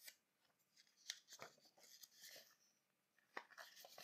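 Faint rustling and a few small clicks of papers being handled, scattered through an otherwise near-silent room.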